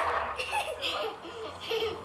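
Children laughing in short, broken bursts.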